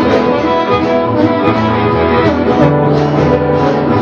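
Live acoustic blues: acoustic guitar with harmonica playing long held notes.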